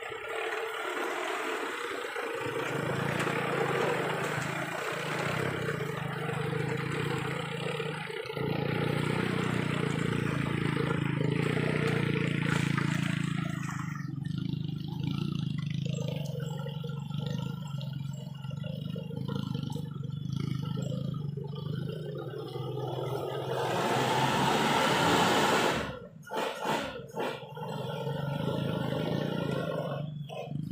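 Toyota Land Cruiser hardtop's engine running under load as the 4x4 crawls through mud, a steady low drone that comes in about two seconds in. About three-quarters of the way through it swells to a louder rush for a couple of seconds, then drops back.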